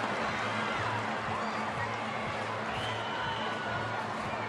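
Stadium crowd noise: a steady murmur of many distant voices, with faint music from the public-address system and a low hum underneath.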